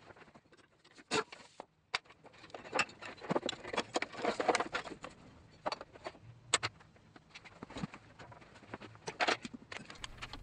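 Irregular clicks, clinks and light knocks of metal tools and bolts being handled while parts are unbolted in a car's engine bay, with sharper knocks about a second in and again past the halfway point.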